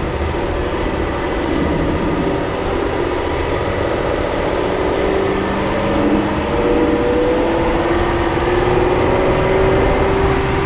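VW Atlas 3.6-litre VR6 engine and its aftermarket Luft-Technik intake running under way, heard up front with the road and tyre rumble of a dirt track beneath it. The engine's pitch rises slowly through the second half as it picks up speed.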